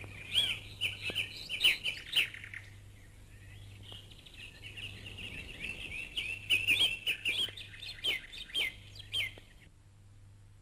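Small birds chirping: quick, high, repeated chirps in two spells, a short one at the start and a longer one from about four seconds in until shortly before the end, over a faint low hum.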